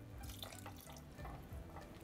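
Faint trickling and dripping of cornstarch solution poured in a thin stream into a pot of stew heating toward a boil.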